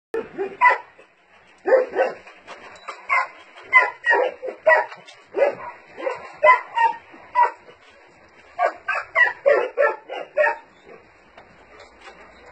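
Dogs barking over and over in short, sharp barks at an irregular pace, with brief lulls around the middle and near the end.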